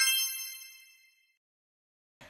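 Bright, sparkly chime sound effect of an animated logo intro: a single ding with several high ringing tones that fades away over about a second and a half.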